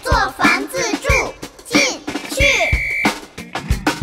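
Mandarin children's song: a child-like voice singing over a bright backing track with a steady kick-drum beat.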